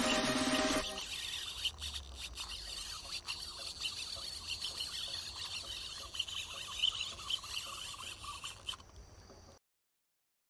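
Electronic music that cuts off about a second in. Then outdoor lakeside ambience with irregular high chirping of birds and a few faint clicks. It all stops abruptly near the end.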